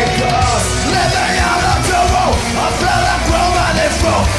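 Heavy metal music with distorted guitars and drums, and a yelled vocal over them.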